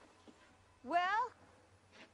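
A cat meows once, a short rising call about a second in.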